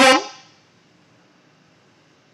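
A voice loudly calling out a short word in the first half-second, then only faint room noise.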